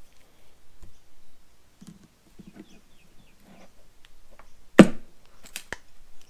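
Steel pliers working at the spring and cable that tension a Recaro seat's trim, with quiet scrapes and clicks, then a single sharp metallic snap about five seconds in as the cable eyelet comes out of the spring, followed by a couple of lighter clicks.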